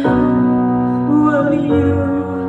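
A rock band playing live through a festival PA: held electric guitar chords that change about three-quarters of the way through.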